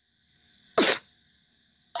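A single short, sharp burst of breath noise from the reciting man, about a second in, in a pause between his lines.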